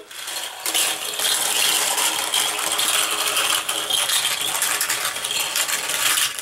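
A pack of nine Micro Drifters toy cars rolling on their ball bearings down a plastic gravity race track, a dense, continuous clattering rattle of many small cars running and knocking against each other and the track walls.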